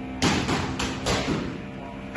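Boxing gloves hitting a heavy punch bag: a hard thud just after the start and another about a second in, faint steady music underneath.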